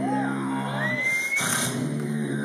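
Human beatboxing amplified through a PA: held low bass drone tones with a high vocal glide rising about a second in.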